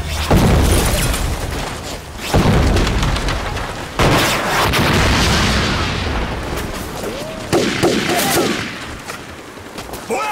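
Staged battle sound effects: heavy explosions and gunfire. The loudest blasts come a moment in, about two and a half seconds in, and four seconds in, each with a long rumbling tail, and a further burst of shots comes about seven and a half seconds in.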